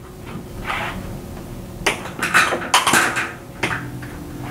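Hollow knocks and clatter of a long PVC pipe being picked up and handled, with a cluster of several sharp knocks starting about two seconds in.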